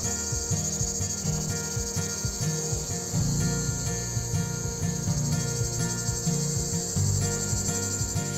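Steady high-pitched chirring of crickets with a faint even pulse, over the low hum of a mass of honeybees crawling back into their hive.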